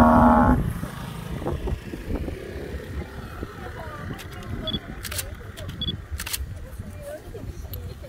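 A long, steady call from the cattle and water buffalo herd ends about half a second in. After it come a low rumble of wind on the microphone and scattered clicks and rustles as the herd walks through grass.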